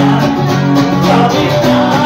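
A live rock song played loud, with guitar prominent over a steady beat and a male voice singing.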